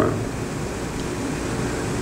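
Steady background hiss and rumble of an old interview recording in a pause between words, with no voice.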